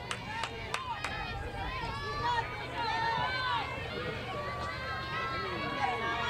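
Many voices of players and fans shouting and cheering over one another, high-pitched and continuous, over a steady low hum.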